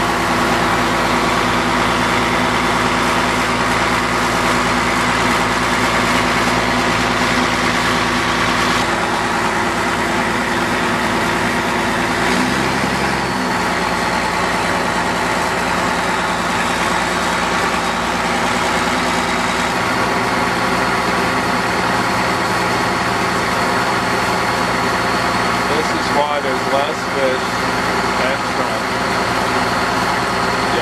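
Boat engine running steadily while the boat is underway, a constant drone with the rush of water and wind beneath it.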